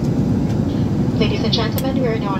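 Steady low rumble of a jet airliner's engines and rushing air, heard inside the passenger cabin. A cabin announcement voice starts over it a little past a second in.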